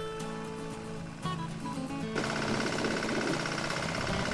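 Background music with a walk-behind two-wheel tractor's engine running under it. About two seconds in, the engine and its working noise get louder and rougher.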